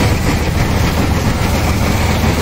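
Combine harvester running steadily while cutting standing wheat: a loud, even drone of engine and machinery with a constant low hum.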